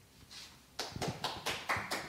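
Applause from a small audience, starting about a second in: separate hand claps, several a second.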